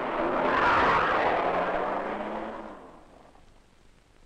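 A car driving past at speed: engine and road rush swell to a peak about a second in, then fade away over the next two seconds.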